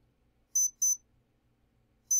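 Quadcopter brushless motor, driven by its electronic speed controller, gives two short high-pitched beeps about a third of a second apart. This is the controller's arming beep sequence after the 0.9 ms, 50 Hz idle signal is connected.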